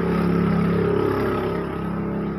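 A motor vehicle's engine running steadily, swelling early and easing off slowly.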